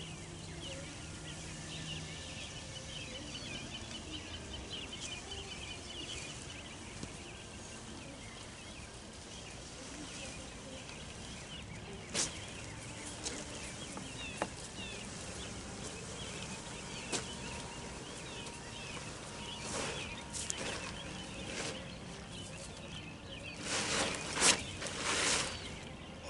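Open-air paddock ambience with a steady hiss and small birds chirping throughout; a few sharp clicks in the middle and a short run of louder rustling thuds near the end.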